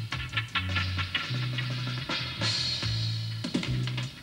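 Reggae dub mixed live on a studio desk: a deep bass line holding long notes over drum-kit hits, with a bright cymbal wash a little past halfway.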